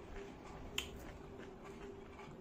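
A single sharp crack just under a second in, from a crisp hollow pani puri shell being broken open with a fingertip, heard close up over quiet room tone.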